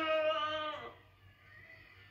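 A person's drawn-out, wavering vocal cry from the film's soundtrack, held on one vowel, which ends about a second in.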